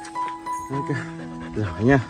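Alaskan Malamute vocalizing close to the microphone: two short rising-and-falling calls, the second one louder near the end. Background music with steady held notes runs underneath.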